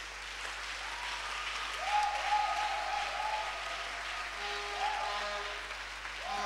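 Congregation applauding, with a few held musical notes sounding over the clapping.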